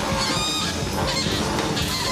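Live jazz band with reed instruments, saxophone and a large low clarinet-type horn, playing bending, honking high notes over the rest of the band.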